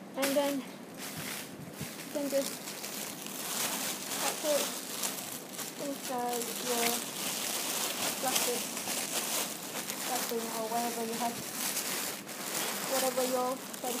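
A clear plastic bag crinkling and rustling as a folded hoop petticoat is pushed into it, with cloth rustling. Short voice sounds break in a few times.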